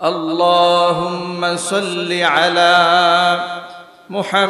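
A man's voice chanting the durood (blessings on the Prophet) in long, held, melodic notes, with a swoop in pitch about halfway through.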